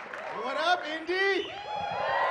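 A man's voice calling out in a drawn-out exclamation that rises and falls in pitch, with faint crowd noise behind.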